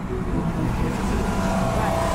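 A van towing a trailer drives past on a city street: a steady low engine and road rumble, with a higher whine joining in near the end.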